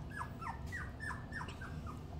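Three-week-old puppies whimpering: a quick run of about eight short, high squeaks, each falling in pitch, roughly four a second.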